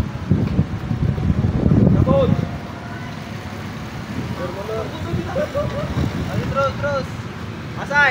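Roadside street noise: a vehicle's rumble is loud for the first couple of seconds, then dies down, leaving a steady traffic background with faint, indistinct voices talking.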